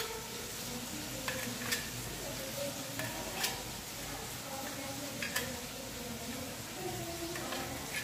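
Steady sizzle of grated onion masala frying in oil in a kadhai, with a few sharp clicks of a kitchen knife striking a steel plate as it cuts through a block of paneer.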